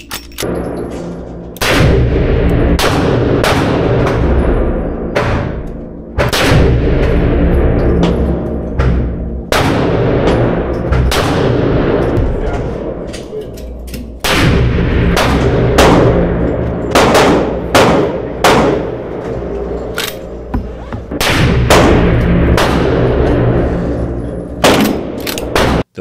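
Repeated shots from a 454 Casull with a 20-inch barrel, firing Magtech 260-grain soft points and then DoubleTap 335-grain hard-cast loads. Each sharp report rings with a reverberant tail in an indoor range, often less than a second after the last. Background music plays underneath.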